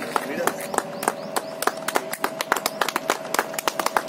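A small group clapping hands: sharp, uneven claps, several a second, with a voice heard briefly early on.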